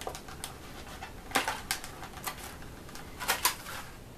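Stiff clear plastic packaging crackling and snapping in the hands as a small rubber-covered MP3 player is worked out of it. It comes as irregular sharp clicks, loudest about one and a half seconds in and again in a quick cluster past three seconds.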